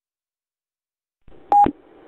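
Dead silence, then a GMRS radio channel opens with a low hiss and a short, loud electronic beep as a distant station keys up over the linked repeater network; the hiss stays on after the beep.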